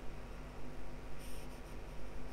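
Faint background room noise with a steady low hum, and a brief soft hiss about a second in.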